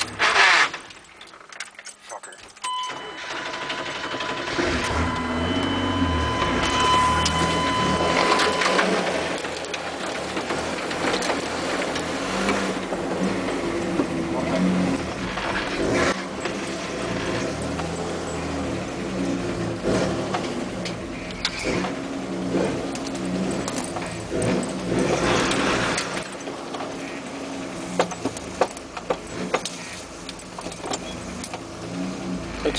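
Pickup truck engine running under load while driving through deep mud, with a brief dip in loudness soon after the start. A steady high tone sounds from about three seconds in until about eight seconds in.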